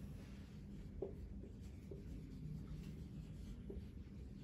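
Marker writing on a whiteboard: a few faint, short strokes and taps as the tip moves across the board.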